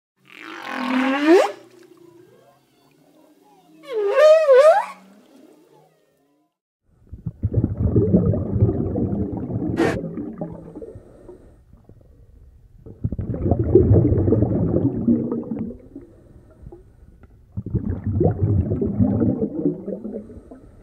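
Two long, whale-like calls with swooping pitch, the second with a wavering warble. Then three long swells of rushing surf, each building and dying away over a few seconds, with one sharp click during the first swell.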